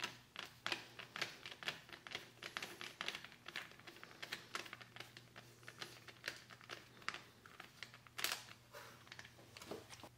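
Irregular clicks, taps and light rattles of a Barkbusters VPS handguard being handled and fitted against a motorcycle handlebar, with a sharper knock about eight seconds in.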